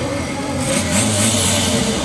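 Two cars' engines running at a drag-race start line, a VW Golf TDI turbo-diesel and a Seat Leon, revved as they wait for launch, with a louder swell about halfway through.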